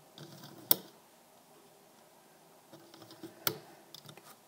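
Rubber loom bands being stretched and snapped onto the clear plastic pegs of a Rainbow Loom: light handling rustle with two sharp clicks, one a little under a second in and another near the end.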